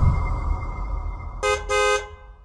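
A car horn sound effect honking twice near the end, a short beep and then a slightly longer one. It sounds over a low rumble that is fading out.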